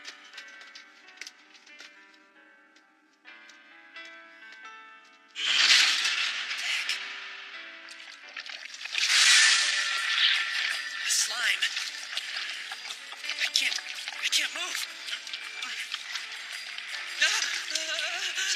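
Anime soundtrack: soft background music, then a sudden loud rushing sound effect about five seconds in and another about nine seconds in, followed by a busy mix of music and effect sounds.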